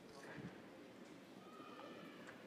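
Near silence: faint room tone of a large hall, with a faint distant voice and a few small knocks.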